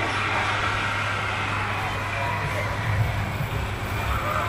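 Junior roller coaster train rolling slowly along its steel track, heard from on board: a steady low hum with a short bump about three seconds in.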